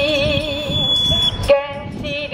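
A woman singing a Japanese protest song, holding one long note with vibrato. A sharp knock comes about one and a half seconds in, and then the singing goes on.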